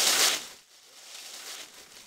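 Tissue paper being unwrapped from a gift: a loud crinkle and tear in the first half second, then fainter rustling of the paper.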